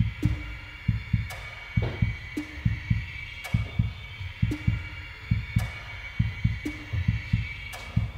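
Suspenseful background music: low double pulses like a heartbeat, about once a second, under a steady high sustained tone.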